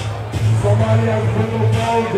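Loud music played by the DJ over the hall's sound system, with a deep bass line and a melody above it.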